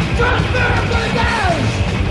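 Live punk rock band playing loud: distorted electric guitar, bass and drums under a hoarse yelled lead vocal, with a long shouted note falling in pitch just after the middle.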